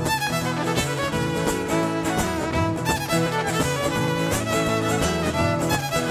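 Live acoustic folk band playing a fast instrumental opening: a fiddle carrying the tune over two acoustic guitars strumming an even, driving rhythm.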